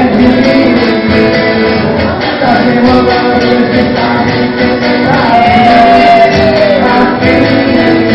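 Live band music: a singing voice carries a melody over guitar and regular percussion hits, with a long sliding sung note about five seconds in.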